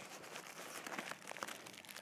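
Faint, irregular rustling and crinkling of packaging and small items as hands rummage through a backpack and take out first-aid gear.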